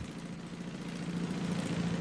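A car engine running with a steady low hum, growing gradually louder as it comes closer.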